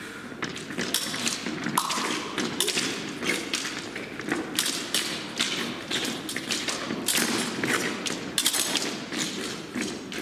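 Fencers' footwork on the piste during an épée bout: a dense, irregular run of thumps and taps from shoes striking the strip as they advance, retreat and stamp.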